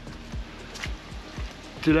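Background music with a low, regular beat.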